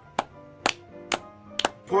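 Sharp percussive hits in a steady beat, about two a second, keeping time for a chant.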